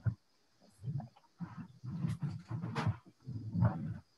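Garbled, choppy voice over a failing video-call connection, breaking up and cutting in and out between moments of dead silence.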